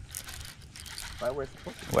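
Okuma Hakai baitcasting reel working as a hooked fish is fought: a faint mechanical whirring with light clicking, and a short vocal sound from the angler a little past a second in.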